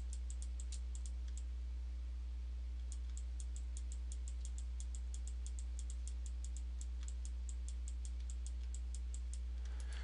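Computer mouse button clicked rapidly over and over, about five clicks a second, with a brief pause about a second and a half in. A steady low electrical hum runs underneath.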